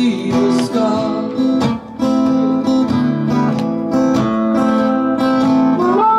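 Acoustic guitar strummed steadily, with a harmonica playing held notes over it, in an instrumental break without singing.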